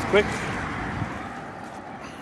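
A car passing on the road, its noise fading steadily away.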